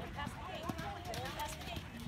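Indistinct voices talking in the background, with the dull hoofbeats of a pony cantering on sand footing.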